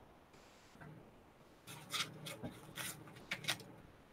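Scratchy rubbing and rustling picked up by an over-amplified computer microphone on a voice call, in a handful of short noisy bursts in the second half. The input gain is set far too high, which the participants put down to Windows microphone amplification.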